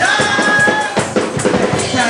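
A congregation singing a gospel song together over a steady beat of drums and percussion.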